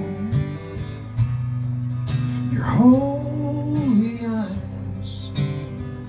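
A live acoustic guitar playing a ringing chord, with a man's voice singing one long drawn-out note in the middle.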